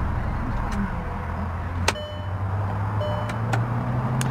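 Volkswagen Beetle 1.6 four-cylinder petrol engine idling, a low steady hum that edges slightly up in pitch. Several light clicks from the controls sound over it, the sharpest about two seconds in.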